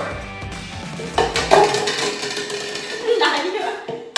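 Plastic party cups being flipped and knocking on a wooden table, with sharp knocks about a second in, a laugh at the start and background music throughout.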